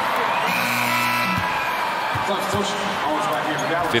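Basketball bounced on a hardwood court a few times over the steady noise of an arena crowd, with some music or voices in the hall.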